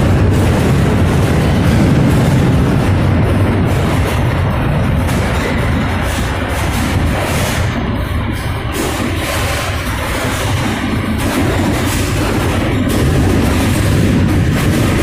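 Freight boxcar rolling over rough track, heard from inside the car with its door partly open: a loud, steady rumble and rattle of the car body, with frequent knocks and bangs.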